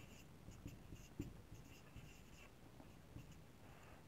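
Faint squeaks and taps of a marker pen writing on a whiteboard, in short separate strokes.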